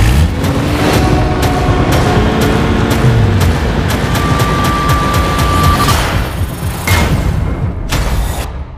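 Action-trailer sound mix: music with deep booms and a run of sharp hits over vehicle noise, with a steady high tone held for about two seconds midway.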